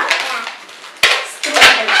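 Long latex modelling balloon squeaking and rubbing as it is twisted into the legs of a balloon figure, with two sharp loud squeaks, about a second in and again near the end.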